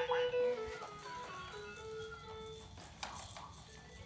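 Baby walker toy's electronic activity panel playing a simple tune of held notes that step up and down, with a short knock about three seconds in.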